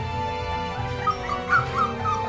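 Nervous five-week-old Akita Inu puppy whimpering: a quick run of short, high whines in the second half, over background music.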